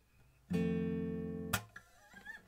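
Background music between sung lines: an acoustic guitar chord strummed about half a second in and left to ring and fade, with a short sharp click about a second later, on the beat.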